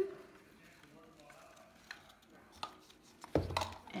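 Faint rustling and a few light taps as artificial tulip stems and satin ribbon are handled against a foam wreath form. A woman's voice starts near the end.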